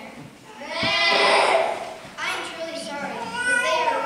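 Children's voices in a hall: one loud, drawn-out call with wavering pitch about a second in, then further wavering voicing.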